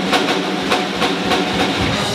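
A swing big band playing, with the drum kit keeping a steady, driving beat under held horn chords.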